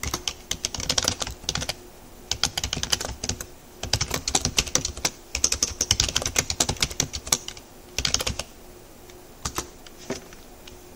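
Typing on a computer keyboard, in several bursts of quick keystrokes with short pauses between them. A few last keystrokes come near the end.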